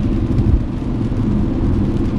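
Steady low road and engine rumble heard inside the cabin of a moving car, with a brief thump about half a second in.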